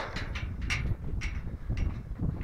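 A steel pipe corral gate being swung on its hinges, with about four light knocks roughly half a second apart, over a low wind rumble on the microphone.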